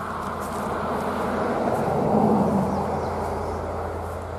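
A road vehicle passing: a steady rushing that swells to a peak about two seconds in and then fades.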